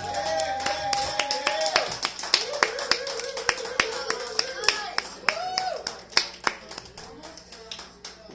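Small bar audience applauding at the end of a song, with separate hand claps and a few long held cheering voices. The clapping thins out and fades toward the end.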